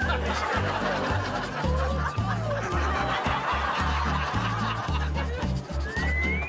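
Comedy background music with a repeating low bass line, mixed with a laugh track of audience laughter.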